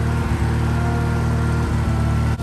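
Garden tractor engine idling steadily with an even, low-pitched running note.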